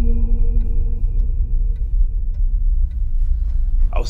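Dark ambient drone score: a deep, steady low rumble under held tones that fade away over the first few seconds, with a light, regular clock-like tick about every half second.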